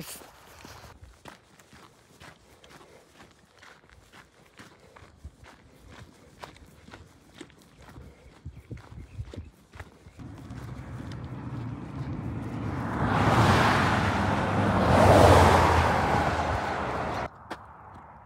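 Footsteps crunching along a dirt and gravel road shoulder. Then a vehicle passes on the highway: a rushing sound with a low rumble that swells over several seconds, is loudest about three-quarters of the way in, and cuts off suddenly near the end.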